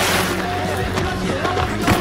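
Music score over a fistfight: men's grunts and strained breathing, with sharp blows at the start and just before the end.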